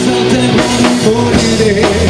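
A live rock band playing: electric guitar, bass and drum kit, with drum hits landing about twice a second.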